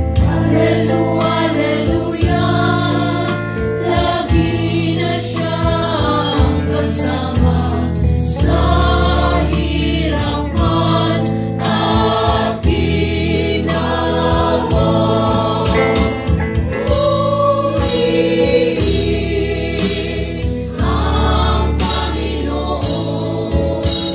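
A live worship band plays a Tagalog praise song: voices singing over electric guitar, bass and drums, with a steady beat.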